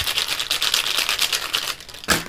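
Plastic felt-tip markers clattering against one another and onto paper as a handful is jostled and spread out: a rapid run of small clicks.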